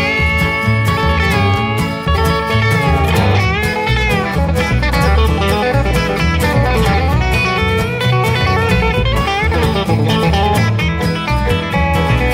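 Instrumental break of a studio blues-band recording: bass, drums and guitar, with a lead line that slides up and down in pitch.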